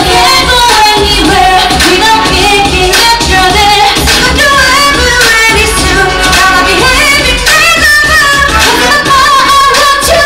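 Upbeat pop song with female voices singing live into handheld microphones over a backing track with a steady, heavy beat.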